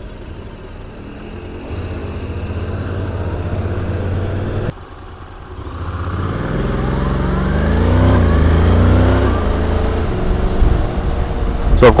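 Honda NC750X's parallel-twin engine riding in traffic: the note builds, drops off abruptly about halfway through, then climbs in pitch again as the bike accelerates away.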